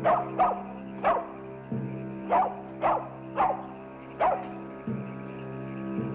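A dog barking, about seven short barks in the first four seconds or so, over steady background music.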